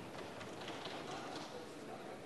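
Faint footsteps, light taps about every half second, over a low murmur of voices.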